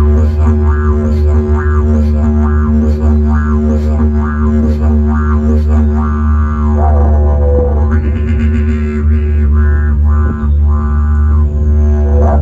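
Didgeridoo drone sustained without a break by circular breathing, its overtones pulsing about twice a second as the lips and tongue shape the sound. Around the middle a sliding voiced tone joins the drone, and the overtones turn brighter and steadier for the last few seconds.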